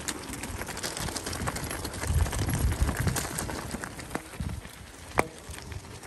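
Bicycle tyres rolling over a gravel track: a continuous crackle of small stones with many little clicks, a few low rumbles about two and three seconds in, and one sharp click just after five seconds.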